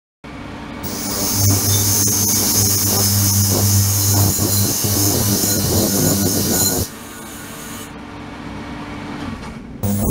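Ultrasonic cleaning tank running: a steady buzzing hum with a bright hiss from cavitation in the water. The ultrasonic output cuts off sharply about seven seconds in, leaving a quieter hum, and comes back on just before the end, cycled on and off by its controller.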